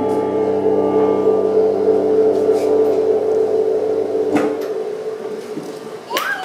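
Piano accordion holding a sustained final chord that fades out near the end, closing the song, with a light knock about four seconds in.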